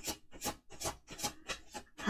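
Tarot deck being shuffled by hand: a rhythmic rasp of cards rubbing against each other, about two or three strokes a second.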